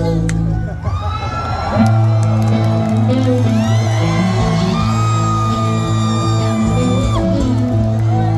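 Rock band playing live through a large PA: electric bass holding low notes and electric guitar with sliding, bending high notes. The playing swells to a louder, fuller sound about two seconds in, with whoops from the crowd.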